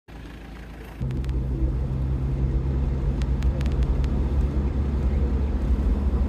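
Mitsubishi Pajero 4WD driving: a steady low engine drone and road rumble, coming in sharply about a second in after a brief quieter stretch.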